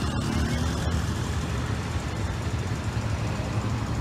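Steady low rumble of road traffic from cars and trucks queued in congested traffic.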